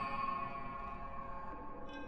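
Generative modular synthesizer patch: sine oscillators and Plaits voices, some ring-modulated, resonated through Mutable Instruments Rings and granulated by Beads. Several steady tones slowly fade, and a new higher cluster of tones comes in just before the end.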